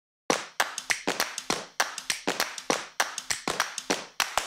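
Rhythmic hand claps in a quick, uneven pattern, about six a second, each with a short echo: the opening beat of a music track.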